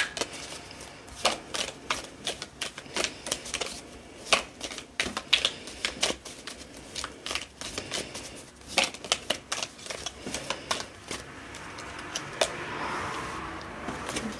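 A deck of round tarot cards being shuffled overhand by hand: a fast, irregular run of light card clicks and slaps, giving way to a softer brushing sound near the end.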